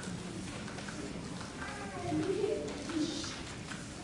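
A voice speaking briefly and softly for a second or two over a steady murmur of room noise.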